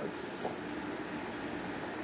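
Steady background room noise: a low, even hiss with a faint hum, heard in a short pause between words.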